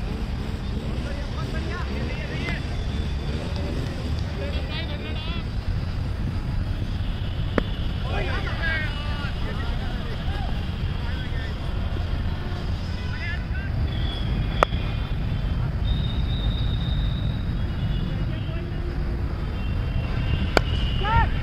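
Wind buffeting the microphone in a steady low rumble, with distant players' shouts and calls across an open cricket ground. Two sharp knocks stand out, about seven seconds apart.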